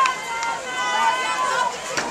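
Several people talking and calling out at once, their voices overlapping with no clear words.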